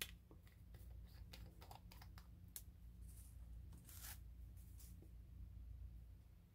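Faint clicks and light scrapes from a small glass Tamiya paint jar and a thin stick being handled, over a steady low hum.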